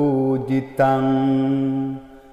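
A man's voice chanting a Sinhala Buddhist protective mantra: a short syllable, then one long steady held note.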